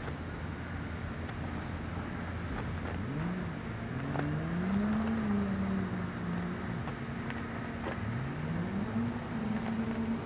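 A motor vehicle engine accelerates over a steady low rumble, its pitch rising from about three seconds in, easing off, then rising again near the end.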